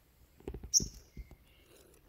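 A sunbird giving one brief high chirp about a second in, amid a few soft handling knocks.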